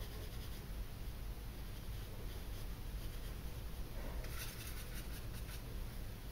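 Faint quick strokes of a soft makeup brush swishing over powder and skin, a short run of them about four seconds in, over a low steady hum.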